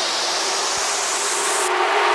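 Electronic dance music build-up: a white-noise sweep rising in pitch over steady held synth tones.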